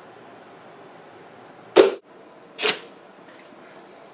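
Two sharp knocks from rubber-band-launched paper cup flyers: a loud one just under two seconds in and a softer one under a second later.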